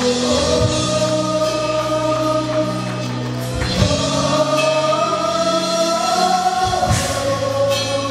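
A live church worship band: several singers holding long sung notes together over keyboard and acoustic guitar, with two sharp hits, one about halfway through and one near the end.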